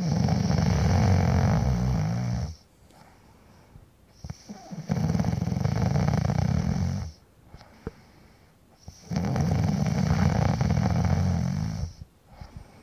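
A man snoring loudly in long, deep snores, three in all, each lasting over two seconds, with a short quiet breath between them.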